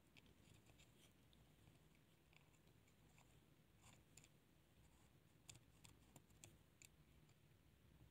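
Near silence, with a few faint small clicks and taps, mostly between about four and seven seconds in, from fingers working a ribbon-cable connector inside an opened Samsung Galaxy S7 Edge.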